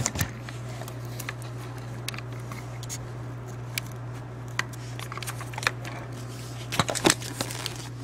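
Light scattered clicks and rustles of fingers pushing a cardboard shim under the lip of the plastic knob on a Scotch ATG tape applicator, with a short cluster of clicks near the end, over a steady low hum.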